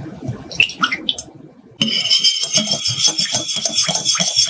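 Milk pouring into a glass bowl of oil. About two seconds in, a wire whisk starts beating the mixture quickly, ticking and scraping against the glass of the bowl.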